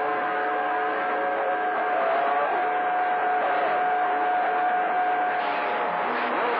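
CB radio receiving skip on channel 28: a steady hiss of static with a sustained whistle tone and fainter tones wavering over it, no voice coming through.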